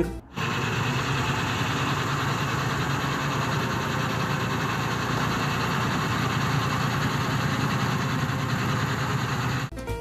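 Dump truck engine running steadily while the truck tips its raised bed to unload soil.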